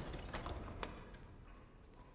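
Footsteps: a few hard steps about half a second apart in a large room, while a low rumble dies away.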